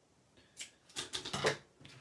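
Foam mounting tape being pulled from its roll and torn off by hand: a run of short scratchy crackles starting about half a second in.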